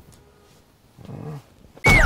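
Faint room tone, then a short low voice-like sound, and near the end a sudden loud burst with a falling, whistle-like glide, landing on the cut between scenes like a transition sound effect.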